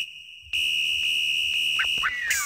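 A high electronic beep tone, like an alarm or buzzer. After about half a second of quiet, one long steady beep starts, and a brief rising chirp comes near the end.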